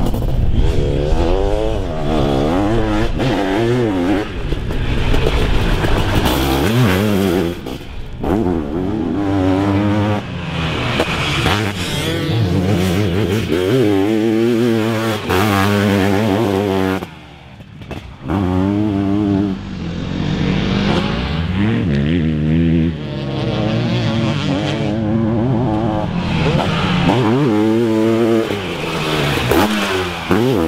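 Sidecarcross outfit's engine revving hard, its pitch climbing and dropping again and again as it accelerates and shifts gear, with a short lull about seventeen seconds in.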